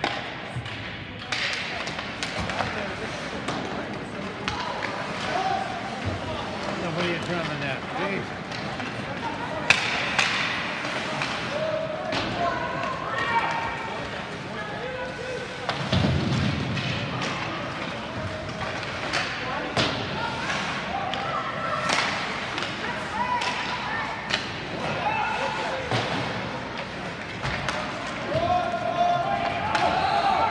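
Ice hockey game sounds in an echoing rink: sharp clacks of sticks and puck and thuds against the boards, one loud crack just before the middle and a heavy thud soon after, over indistinct shouting from players and spectators.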